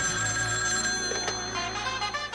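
Telephone bell ringing steadily as a cartoon sound effect.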